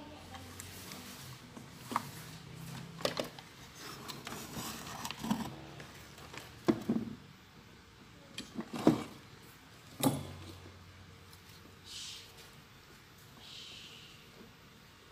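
Clicks and knocks of a TV chassis circuit board being handled and turned over on a workbench while a new electrolytic capacitor is fitted, about five sharp knocks in all, the loudest two near the end.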